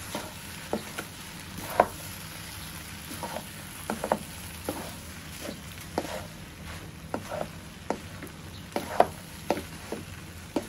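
Flat noodles and prawns stir-frying in a non-stick wok: a steady sizzle under irregular sharp clacks, about one or two a second, as a wooden spatula and a second utensil toss the noodles against the pan.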